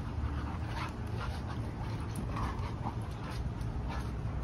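Two dogs play-wrestling, making several short dog sounds over a steady low rumble.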